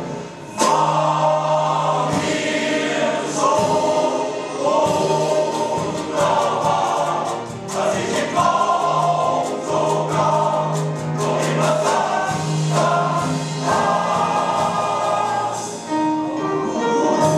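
Male voice choir singing in several-part harmony, holding sustained chords; the singing dips briefly just after the start, then comes back in full voice.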